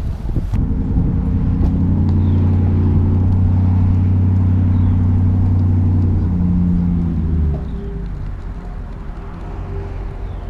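Tow vehicle's engine pulling a bass boat on its trailer, a steady drone that sets in just under a second in and eases off about seven and a half seconds in.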